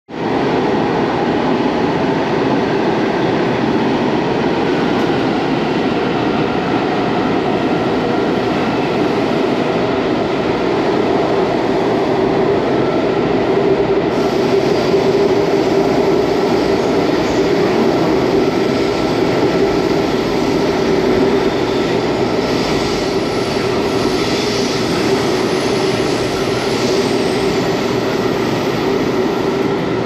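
Washington Metro railcar running along the track, heard from inside the car: a steady, loud rumble of wheels and running gear, growing hissier in the second half.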